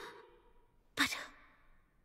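A woman says a single short word, "But", about a second in. Otherwise there is near silence.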